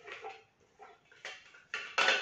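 Thermomix spatula scraping chopped carrot out of the stainless-steel mixing bowl: a few short scrapes against the metal.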